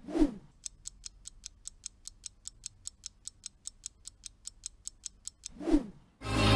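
Quiz countdown-timer sound effect: a clock ticking about five times a second for nearly five seconds, opened by a short falling sweep and closed by a rising sweep just before the end.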